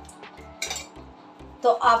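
A brief clink of kitchen utensils about half a second in, over background music with a steady beat.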